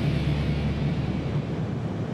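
BMW R1200GS's horizontally opposed twin-cylinder engine running steadily as the bike rides along at speed, with wind noise; it eases off slightly near the end.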